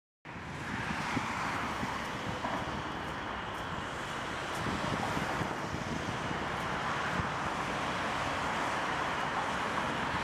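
Steady city traffic noise, a continuous even hiss with a rough low rumble of wind on the microphone.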